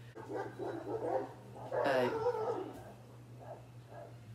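Dogs barking in a run of calls that dies down about two and a half seconds in, over a steady low hum; the dogs are worked up over the household cats.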